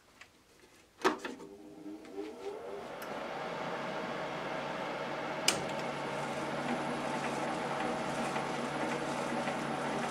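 Warco WM250V variable-speed lathe switched on with a click about a second in, its motor and gearing whine rising in pitch as the spindle runs up, then running steadily at about 156 rpm with the three-jaw chuck and test bar turning. A single sharp tick about halfway through.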